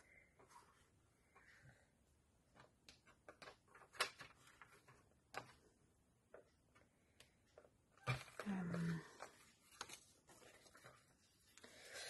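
Faint handling noises of metallic craft paper on a plastic paper trimmer: scattered small clicks and crinkles, with one sharper click about four seconds in. A short murmur from a voice comes about eight seconds in.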